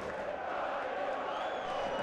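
Steady football stadium crowd noise from the stands, an even wash of many voices.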